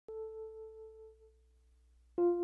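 One soft keyboard note struck once and left to ring, fading away over about a second: the first note of the soundtrack music.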